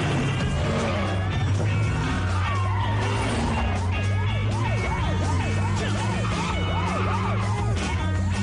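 A police siren yelping in quick rising-and-falling sweeps, about three a second, from about three seconds in, over the steady drone of a car engine.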